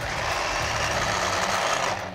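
Oster electric mini food chopper running steadily with its lid pressed down, its blade whirring as it grinds pine nuts and parmesan in olive oil into pesto.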